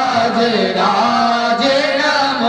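Male priests chanting Sanskrit mantras into microphones in a melodic recitation that slides up and down in pitch, with a steady held low note beneath.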